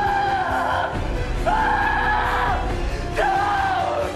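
A man screaming in three long, drawn-out cries, about one every second and a half, over dramatic film score music.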